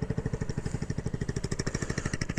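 Honda Ruckus scooter with a swapped-in 150cc GY6 single-cylinder four-stroke engine idling through a straight-pipe exhaust: a steady, even putter of about a dozen exhaust pulses a second.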